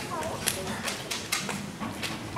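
Audience applause dying away to a few scattered claps, with faint voices in the hall.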